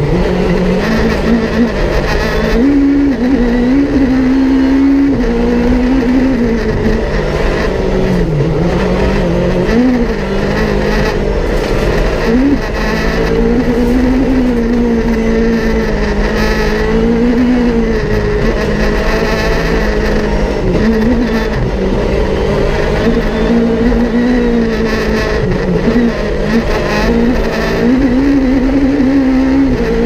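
Peugeot 306 Maxi kit car's engine heard from inside the cabin at full rally pace. The note climbs and falls over and over, with quick drops between rises as the driver changes gear and lifts for corners.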